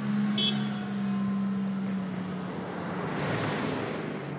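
A car passing on the road: a steady engine hum, then tyre and road noise swelling and fading about three seconds in. A short high beep sounds near the start.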